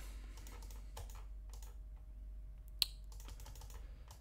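Light, scattered clicks of a computer keyboard and mouse in use, with one sharper click nearly three seconds in.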